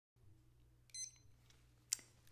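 A short, high electronic beep about a second in, followed by a brief faint click just before the end.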